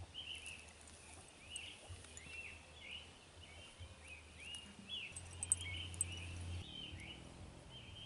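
Faint birds chirping repeatedly, short rising and falling calls throughout, over quiet outdoor background, with a faint low hum for a second or so in the middle.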